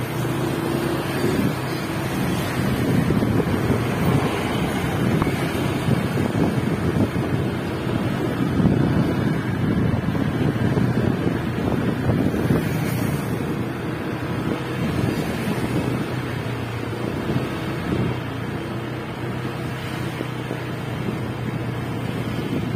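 Wind buffeting the microphone of a moving scooter, with the motorbike's small engine running steadily underneath as a low hum.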